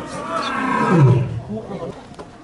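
A young male lion roaring: one loud call that swells to its peak about a second in and drops in pitch as it fades.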